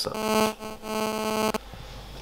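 Mobile-phone radio interference buzzing on the microphone from a smartphone held close to it: a steady, rapidly pulsing buzz with a stack of overtones, lasting about a second and a half and cutting off suddenly.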